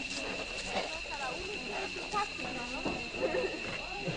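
A group of girls' voices calling and chattering outdoors, with short rising and falling cries, over a steady high-pitched tone.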